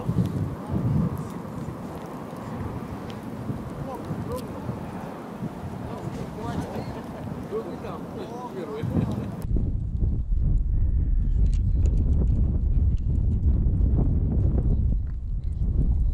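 Distant voices of people out on an open field, with outdoor air. About nine and a half seconds in the sound changes abruptly to heavy wind buffeting on a body-worn camera's microphone, a low rumble with small clicks of handling.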